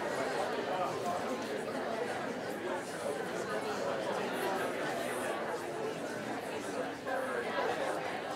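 Audience chatter: many people talking quietly at once, an even murmur of overlapping voices with no single voice standing out.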